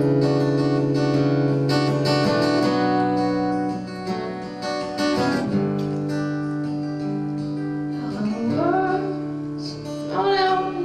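Steel-string acoustic guitar playing a slow song introduction, chords strummed and left ringing, changing chord about every three seconds.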